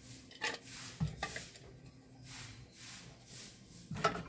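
Faint handling of a metal pressure-cooker lid while a replacement valve is fitted into it, with a few light clicks about half a second and a second in.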